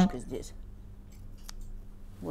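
Tailor's shears snipping a short notch into cashmere fabric: faint blade snips, with one sharper click about a second and a half in.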